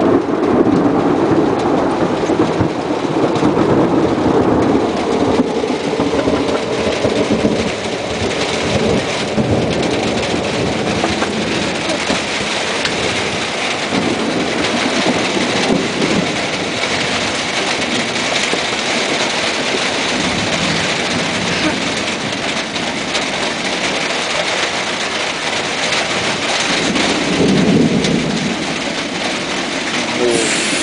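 Thunder rolling over steady rain: a long rumble in the first several seconds that slowly dies away, another rumble near the end, with the hiss of rain throughout.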